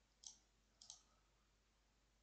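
Two faint computer mouse clicks, about a quarter second and just under a second in, otherwise near silence.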